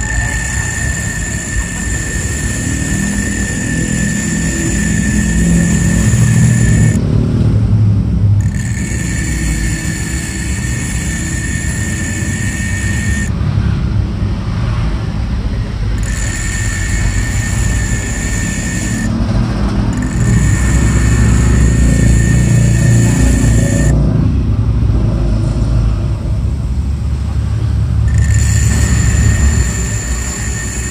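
Small bench grinder running, its disc grinding the side of a steel 6201 bearing ring held in pliers to shape it into a bushing. A steady low motor rumble runs throughout, under a high grinding note that drops out four times for a second or two.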